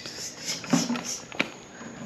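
Footsteps and scuffing on a concrete walkway as a child's small plastic-wheeled trike is pushed along, with a couple of sharp clicks and a brief low voice sound.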